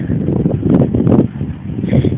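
Old two-wheel-drive Toyota Hilux pulling clear of a cattle grid after being stuck on it: a rough, uneven vehicle noise with no clear steady engine note.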